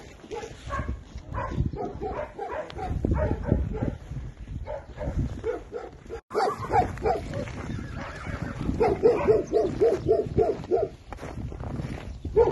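A dog barking off camera in quick runs of short yaps, the loudest run of rapid barks near the end.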